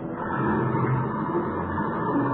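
Car engine running with a steady drone, as a radio-drama sound effect.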